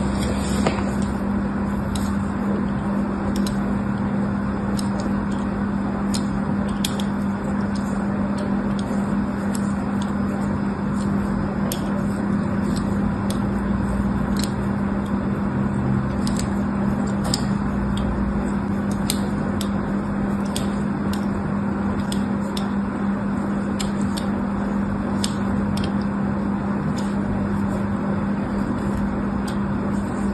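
A thin blade scoring lines into a bar of soap: light, crisp ticks and scratches at irregular intervals, over a steady low hum.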